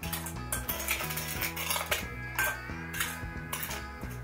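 A metal spoon stirring and scraping a dry mix of sand and cornstarch in a glass bowl, with irregular clinks of metal on glass, over background music with steady bass notes.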